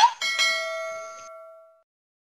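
A bell-like notification chime, struck once, ringing with several steady tones together and fading away over about a second and a half.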